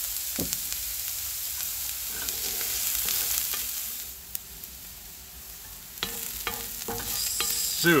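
Diced onion and garlic sizzling in oil in a black iron pan, with a wooden spatula scraping and tapping against the pan as they are stirred. The sizzle drops quieter about four seconds in and picks up again near the end.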